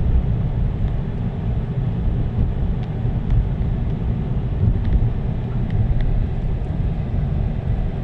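Steady low rumble of a car driving, road and engine noise heard from inside the cabin.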